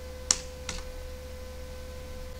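Two keystrokes on a computer keyboard, a sharp click and then a softer one under half a second later, over a steady low electrical hum.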